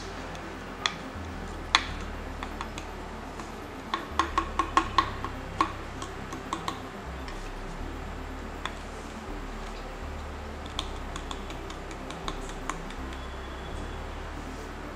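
Small metal spoon clicking against the neck of a plastic bottle and a glass bowl as baking soda is scooped out and tipped in. The clicks are sparse, with a quick run of about six some four seconds in.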